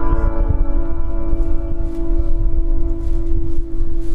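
Amplified electric guitar holding one note that rings on steadily, its upper overtones slowly fading, over a low rumble.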